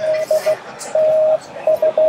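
Morse code (CW) audio tone: one steady beep keyed on and off in short dits and longer dahs, played from a phone through a small speaker.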